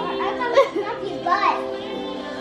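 A young child's high voice, chattering over steady background music.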